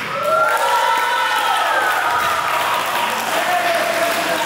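A crowd clapping and cheering, with high-pitched shouts rising and falling over the clapping; it starts suddenly at the end of the music and holds steady.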